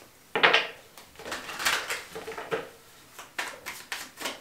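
A large deck of oracle cards being shuffled by hand in sections: a string of irregular swishes and clicks as the cards slide and tap together, the first coming sharply just after the start.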